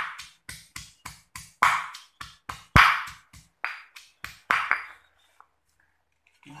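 Stone pestle pounding shallots and garlic in a heavy stone mortar, a steady rhythm of knocks about three to four a second with a few harder strikes, grinding them into a sambal paste. The pounding stops about five seconds in.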